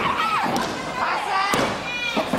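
A single heavy thud of a wrestler's body hitting the ring canvas about one and a half seconds in, over high-pitched shouting voices.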